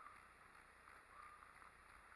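Near silence: faint background noise, with no clear sound event.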